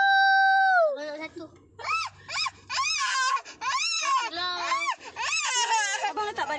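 A young child crying and whining: one long, high, held cry that falls away about a second in, then a string of short, high wails rising and falling in pitch.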